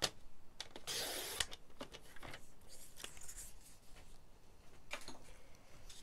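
Paper trimmer cutting a strip of patterned paper: the blade is drawn along its rail about a second in, a short hiss lasting about half a second. Light clicks and rustles of paper being handled and moved on the trimmer follow.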